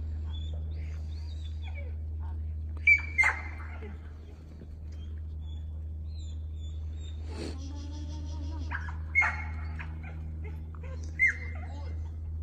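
Short, loud, high calls directing a working sheepdog: two close together about three seconds in, another about nine seconds in and one near the end. A steady low rumble of wind runs underneath.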